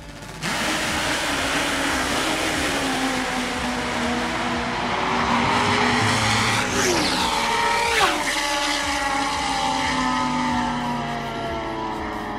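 Drag-racing motorcycles, a supercharged nitro Top Fuel bike and a nitrous bike, launching at full throttle with a sudden loud blast of engine noise and running hard down the strip. Two falling-pitch sweeps come about seven and eight seconds in as the bikes go by, then the sound tails off.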